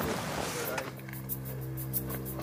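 Background music begins about a second in: a sustained low drone with a quick ticking beat above it.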